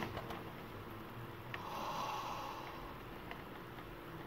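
Crumpled packing paper rustling faintly as hands dig through a cardboard box, with a soft breathy sound about a second and a half in.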